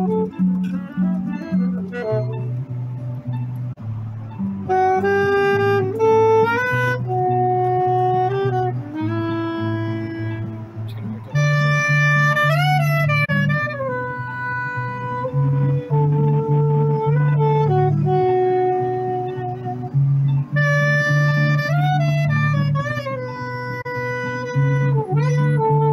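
A saxophone plays a slow melody with bends and slides over a backing track from a small amplifier, whose bass line repeats in even held notes.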